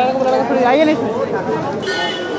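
Several people talking close by, their voices overlapping in street chatter.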